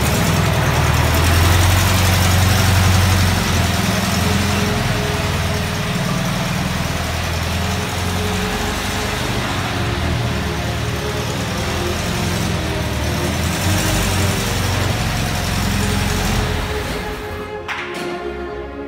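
Air-cooled flat-four engine of a 1951 VW Samba bus running at low revs, a steady low hum with a noisy rasp over it, falling away near the end.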